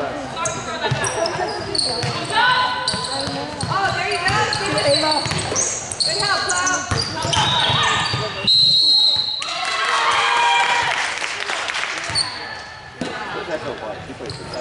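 Basketball bouncing on a hardwood gym floor during live play, with players' voices and calls echoing in a large hall and short high squeaks now and then.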